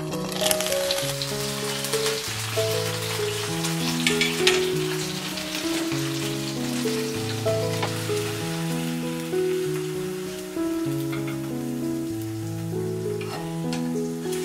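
Eggs frying in a nonstick pan over a gas burner, a crackling sizzle that is strongest in the first few seconds and then eases. Background music of slow, even notes plays throughout.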